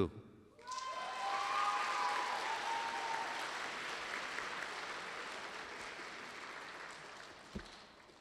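An audience applauding. The clapping starts about a second in and slowly fades away, with a drawn-out call from someone in the crowd over its first couple of seconds.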